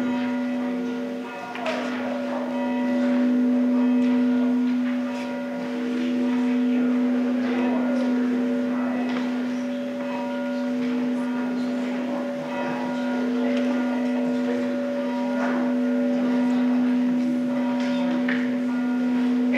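Organ music: slow, sustained chords that change every few seconds over one steady held note.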